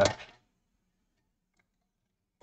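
The end of a spoken word, then near silence with only the faintest traces of handling.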